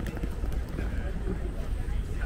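City street ambience: passers-by talking, a steady low rumble of traffic, and a few sharp clicks near the start, like footsteps on wet paving.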